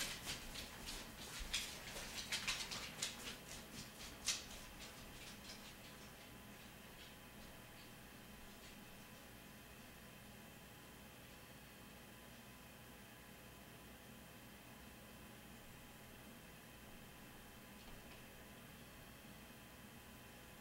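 A quick run of small clicks and rustles that dies away over the first five seconds, with one sharper click near the end of it. Then only a faint steady hum over room tone.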